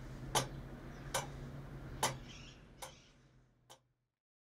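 Tower clock movement of the Shams-ol-Emareh clock ticking, a sharp tick a little under once a second, five in all, over a low steady hum. The sound fades away near the end.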